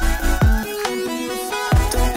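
Electronic dance music: a synth melody over deep bass-drum hits that fall quickly in pitch. The bass drops out for about a second in the middle and comes back near the end.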